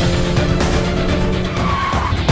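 A car pulling up and skidding to a stop, with a brief tyre squeal near the end, under background music.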